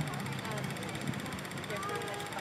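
Faint, indistinct distant voices over a steady low engine hum.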